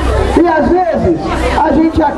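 A man speaking into a handheld microphone: speech only.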